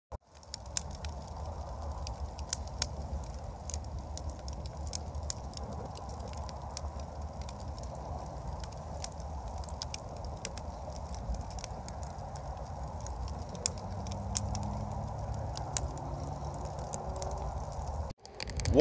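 Wood fire crackling and popping in a fire pit, sharp irregular snaps over a low steady rumble.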